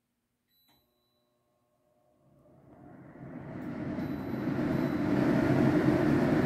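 Hauslane UC-PS18-30 range hood: a short beep from its touch control panel just under a second in, then its twin fan motors start and spin up. The fan noise builds over about three seconds to a steady run on high, the top of its six speeds.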